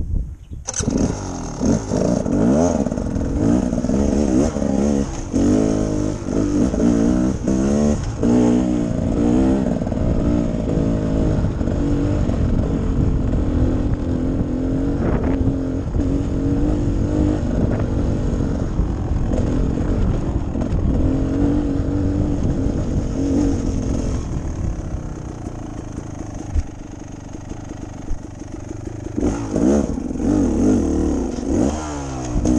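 Beta Xtrainer two-stroke dirt bike engine pulling away under throttle, revving up and down through the first several seconds. It then runs more steadily, eases off about 24 seconds in and picks up again near the end.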